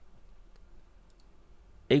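A few faint clicks of computer input while a calculation is entered, over low room hiss; a man's voice starts right at the end.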